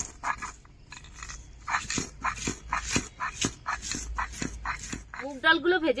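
Roasted whole spices (cumin, coriander seed, dried red chillies and bay leaves) being crushed on a stone grinding slab with a stone roller. It is a steady run of crunching strokes, about four a second.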